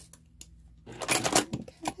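Sewing thread being cut at a sewing machine and the pinned quilt pieces pulled free from under the presser foot: a short clatter of rustling and clicks about a second in, then a single click.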